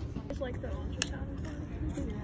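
Indistinct voices talking, over a steady low rumble, with one sharp click about a second in.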